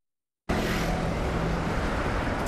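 About half a second of dead silence at an edit, then steady outdoor city background noise: traffic noise with a low steady hum under it.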